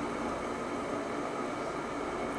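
Steady background noise in a room: an even hum and hiss with no distinct events.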